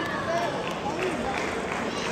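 Indoor hall hubbub of overlapping voices, with scattered sharp clicks of table tennis balls striking tables and bats.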